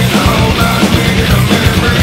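Loud nu-metal-style rock song, dense and continuous, with rapid drum hits under low sustained notes.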